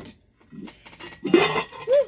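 An enamelled cast-iron casserole pot being lifted out of its box, with a brief clink and clatter of its lid about a second and a half in.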